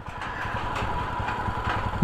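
Motorcycle engine running steadily at low speed as the bike is ridden slowly across a suspension bridge, with a faint steady whine above it.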